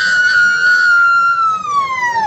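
A loud, high-pitched siren-like wail: one long pitched tone that has just risen, holds nearly level while sagging slightly, and drops away in pitch near the end.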